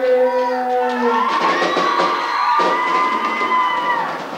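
A live school rock band's last held note ends about a second in, followed by a young audience cheering and shouting, with long high-pitched yells held for a couple of seconds.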